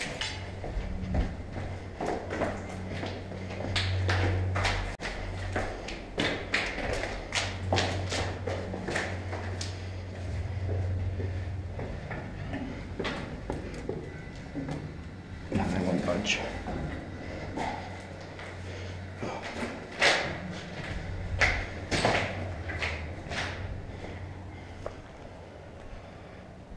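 Hurried footsteps and scuffs on concrete stairs, with irregular knocks and thuds, over a low drone that comes and goes.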